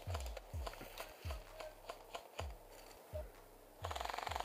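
Footsteps crunching and crackling through dry grass and leaves, with a soft low thud at each stride. Right at the end a fast, even rattle of airsoft gunfire begins.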